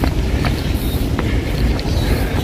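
Wind buffeting the microphone: a loud, steady low rumble, with a few faint ticks over it.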